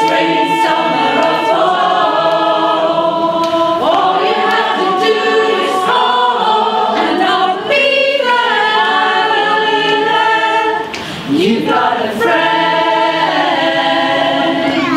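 Women's choir singing a cappella in held, layered harmony, with a short break about eleven seconds in.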